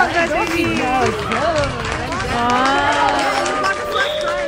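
Several voices, some of them high-pitched children's voices, talking over one another.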